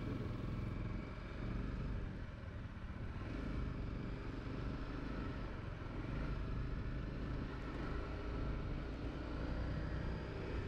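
Honda CRF250L's single-cylinder four-stroke engine running steadily at low speed, heard from a camera on the bike, along with road and wind noise.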